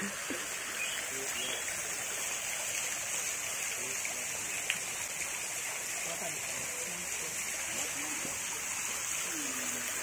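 Water pouring from a garden fountain and splashing steadily into a pond, with faint voices in the background.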